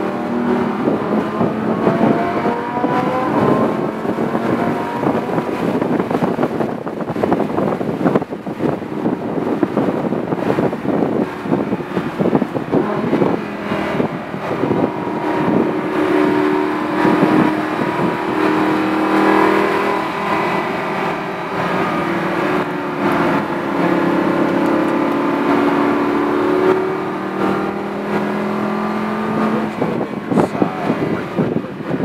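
Supercar engine heard from inside the cabin, pulling at moderate track speed with its pitch slowly rising and falling as the car accelerates and slows through the corners, over steady tyre and road noise.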